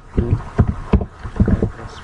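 Computer keyboard keystrokes, a run of separate key presses about three or four a second, as a line of code is typed.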